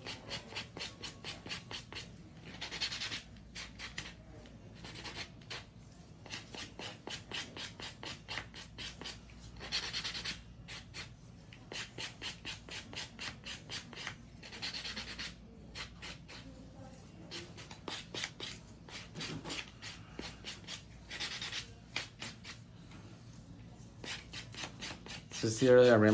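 A nail buffer block rubbed rapidly back and forth over acrylic nails, a quick scratchy rasp of several strokes a second with a few longer passes, smoothing the drilled acrylic surface.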